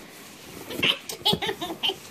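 Young girls giggling in short, high-pitched bursts, starting about a second in.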